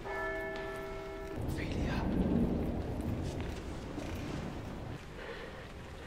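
A single church bell strike rings out at the start and is cut off abruptly after about a second and a half. A low rumble follows for most of the rest.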